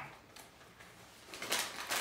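A quiet moment, then from about a second and a half in a few short crinkles of a plastic snack bag being handled.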